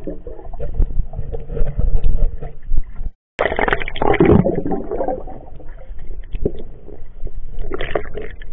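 Muffled underwater rumbling and gurgling of moving water and bubbles, picked up by an action camera inside its waterproof case, with scattered small clicks. The sound cuts out for a moment about three seconds in, then returns with a louder surge of water noise.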